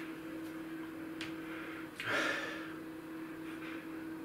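A man sniffing beer from a glass to take in its aroma: one long breath in through the nose about two seconds in, with a couple of faint clicks earlier. A steady low hum runs underneath.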